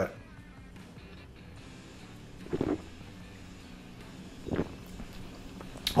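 A person drinking beer from a glass: a quiet stretch with two short, soft swallowing sounds, about two and a half and four and a half seconds in, over a faint steady hum.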